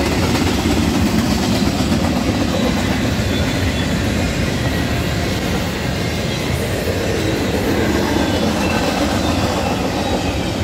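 Double-stack intermodal freight train passing close by: a steady, continuous noise of the cars' wheels running on the rails.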